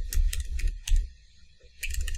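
Computer keyboard typing: a quick run of about half a dozen key clicks, each with a dull thud, then a pause and a few more keystrokes near the end, as a login password is entered.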